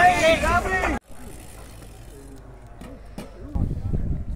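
Spectators shouting loudly at passing mountain bike racers, cut off abruptly about a second in. After that come faint voices and outdoor noise, which grow louder again near the end.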